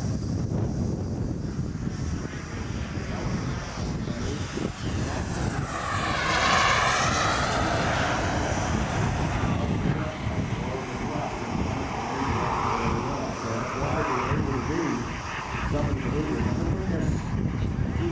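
Turbine-powered radio-controlled Jet Legend F-16 model flying overhead. Its turbine whine swells into a loud rushing pass about six seconds in, with a sweeping, phasing whoosh, then fades; a smaller swell follows around twelve seconds.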